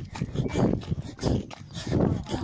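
A tired runner breathing hard in rhythmic puffs, about two breaths a second, late in a long run.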